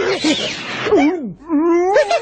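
A cartoon hit effect: a short rushing noise, then an animal character's voice-acted wavering cry that slides up and down about twice.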